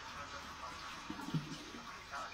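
Tap water running in a steady stream into a sink, over a small metal mesh strainer held under it. The rinse is washing the food colouring out of what is in the strainer.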